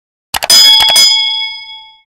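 A few quick clicks, then a bell sound effect dings twice and rings out, fading away by the end.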